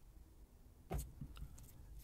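Near silence broken by a single short click about a second in, followed by a few fainter ticks.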